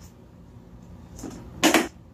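Grey plastic storage-tub lid being put back on the tub: a light rustle about a second in, then a loud plastic clack near the end as the lid is pressed shut.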